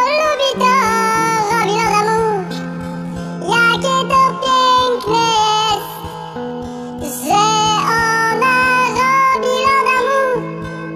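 A song sung in a sped-up, high-pitched chipmunk-style voice over backing music, in sung phrases with short breaks between them.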